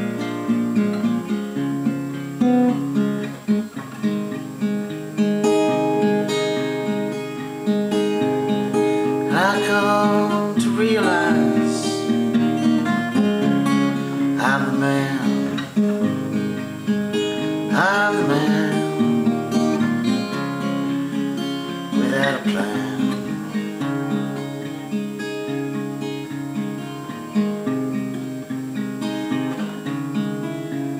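Fingerpicked acoustic guitar playing an instrumental blues-folk passage, with a few notes sliding up and down in pitch in the middle stretch.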